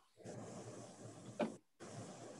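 Faint steady background hiss over a video-call audio line, with one short click about one and a half seconds in. The audio cuts out completely for a moment just after it.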